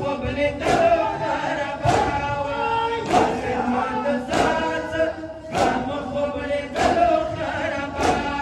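Men's voices chanting a noha, a Shia mourning lament, together through loudspeakers. A crowd of men beats their chests in unison (matam), sharp strikes landing about once every 1.2 seconds, seven of them.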